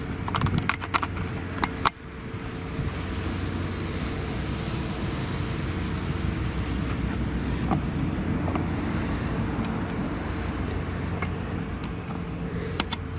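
Claas Jaguar 970 self-propelled forage harvester running under load as it chops maize, a steady machine drone with a constant whine over a deep hum. Sharp clicks and knocks sound through the first two seconds.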